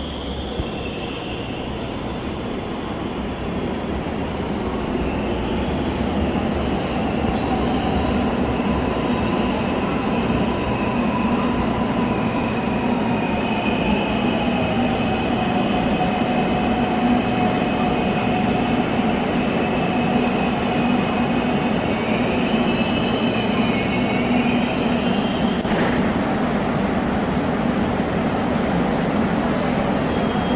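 Korail Class 351000 electric multiple unit pulling into an underground platform, growing louder over the first several seconds. About halfway in, a whine glides down in pitch as it slows, and a high squeal of the wheels and brakes carries on until it comes to a stop.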